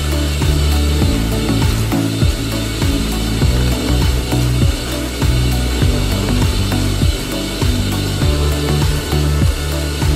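Shop vacuum running while its hard nozzle is scrubbed back and forth over a carpet floor mat, with rapid scraping strokes as it sucks up grit.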